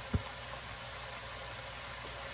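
Vegetables sizzling softly and steadily as they cook down in an enamelled cast-iron pot, with a low steady hum underneath. One short soft knock comes just after the start.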